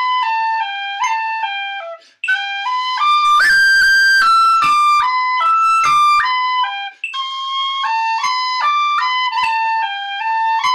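Tin whistle playing a jig melody in 6/8, one clear note after another with short breath breaks about two and seven seconds in. The tune climbs to louder high notes in the middle.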